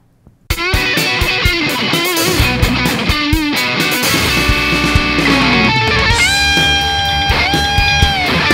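Overdriven Suhr electric guitar improvising lead lines in B minor pentatonic and Dorian over a backing track with drums and bass, starting about half a second in. Quick runs give way to a long sustained note, bent up about six seconds in.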